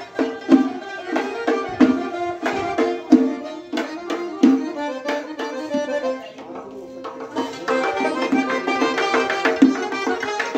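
Live traditional Uzbek folk music: a doira frame drum beating a steady rhythm, with a long-necked plucked lute and an accordion playing the melody. A little past the middle the drum strokes thin out for about two seconds, leaving mostly the accordion's held notes, then the full beat comes back in.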